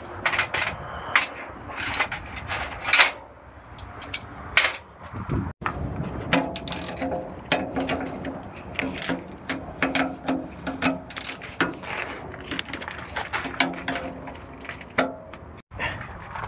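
Hand tools working on a truck's steel fender brackets and frame: a quick, irregular run of sharp metallic clicks, clanks and knocks.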